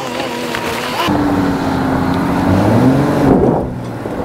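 Jeep Gladiator's 3.6-litre V6 pulling the manual truck up a dirt hill in four-high with the clutch being slipped under load. The engine note steps up about a second in, climbs a little around three seconds, then drops back near the end.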